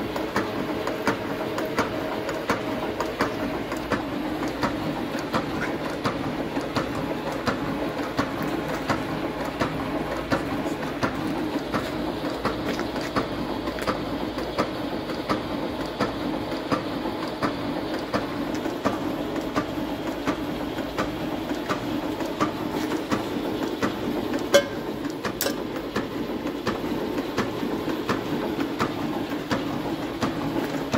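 Fellows Type 6A gear shaper running under power: a steady mechanical running sound from its drive and gear train, with a regular clicking beat a little under twice a second. There is one louder knock late on.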